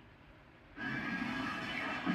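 Horror film soundtrack playing from a television: faint hiss, then about a second in the film's sound comes in abruptly and loud, a dense, sustained music-like bed.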